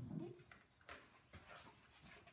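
A pug's short low grunt at the start, then a few faint clicks and taps.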